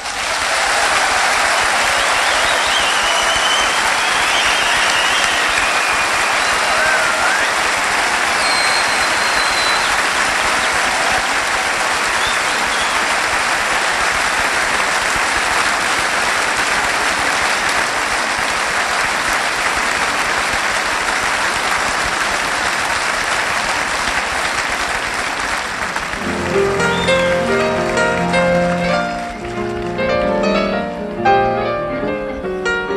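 Large concert-hall audience applauding, with a few whistles in the first ten seconds. A piano starts playing about 26 seconds in.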